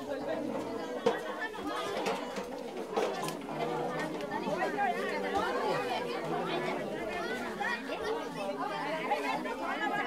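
Many people chatting at once, overlapping voices with no single clear speaker. A short sharp knock stands out about a second in.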